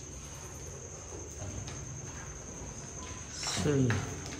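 A faint, steady high-pitched tone over quiet room background, with a short burst of a man's voice near the end.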